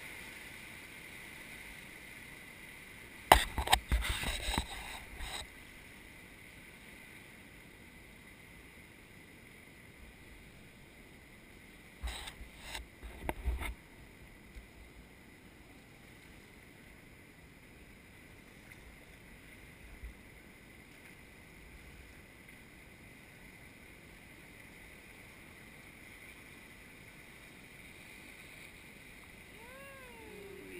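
Fast river water rushing past a boat-mounted camera just above the waterline. Two short runs of splashes and knocks cut in, about three seconds in and again about twelve seconds in.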